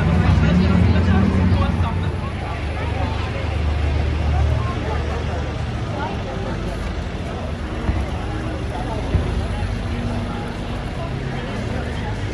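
Busy city street ambience: passers-by talking around the microphone over the low rumble of road traffic, heaviest in the first few seconds. Two brief knocks stand out in the second half.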